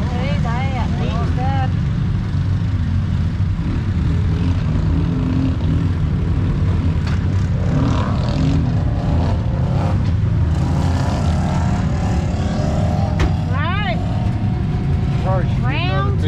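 Side-by-side UTV engine running with a steady low drone while driving along a trail. Short high squeaky glides come and go over it near the start and again near the end.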